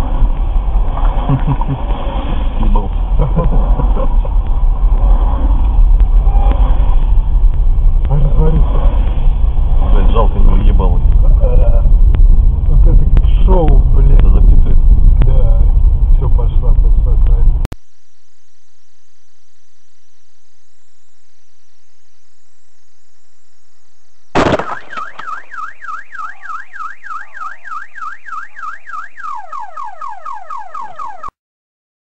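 Dashcam audio from inside a slowly moving car: heavy low rumble of engine and road noise with indistinct voice-like sounds, cutting off abruptly about 18 seconds in. After a quiet stretch, a car alarm starts suddenly about 24 seconds in and warbles rapidly, its pitch sweeping up and down several times a second, dropping to a lower pattern near the end.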